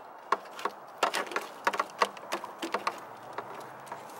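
Microfiber cloth wiping the soapy, wet painted body panel around a Jeep Wrangler's tail-light opening: a run of short, irregular squeaks and scuffs in quick groups, one per wiping stroke.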